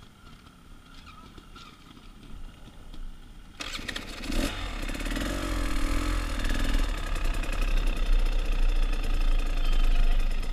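Off-road motorcycle engine starting suddenly about a third of the way in, revving briefly, then running steadily and loudly.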